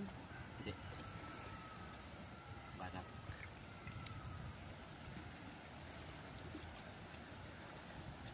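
Faint, steady outdoor ambience of wind and sea water against shore rocks, with a brief faint voice about three seconds in.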